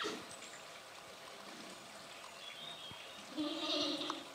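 Giant panda bleating near the end, one short pitched call under a second long; a bleat is the sheep-like call pandas use in courtship. A brief sharp sound comes right at the start.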